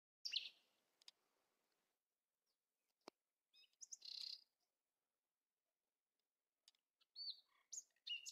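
Small birds chirping in short, high calls: one near the start, a longer run around four seconds in and another near the end, with near silence between. A single sharp click about three seconds in.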